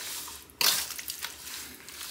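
Raw chicken pieces squelching wetly as they are stirred through marinade with a metal frying spoon in a stainless steel bowl, with a louder scrape about half a second in.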